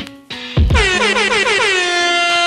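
Air horn sample in a hip-hop beat: after a kick drum hit, a fast run of short blasts, each sliding down in pitch, runs into one long held blast.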